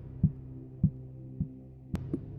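Film soundtrack: a held low music tone with four soft, low thumps about every half second, a slow heartbeat-like pulse.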